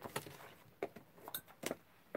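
A few light taps and clicks of a clear acrylic stamp block being set down and pressed onto an ink pad while inking a fern stamp.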